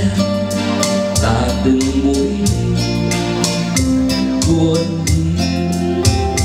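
A male vocalist singing a slow ballad to a strummed acoustic guitar and an electronic keyboard, over a steady beat.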